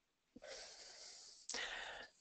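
A person breathing close to a headset or desk microphone: one long breath, then a second, sharper and louder breath about a second and a half in.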